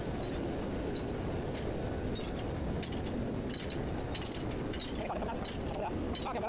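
Steady low rumble of industrial plant machinery, with faint scattered ticks from about two seconds in.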